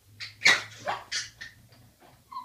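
Dog barking, about five short barks in quick succession, the second the loudest.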